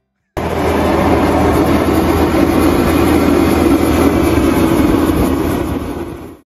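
A loud, steady rumbling noise cuts in suddenly just after the start, holds even for several seconds, then fades out at the very end.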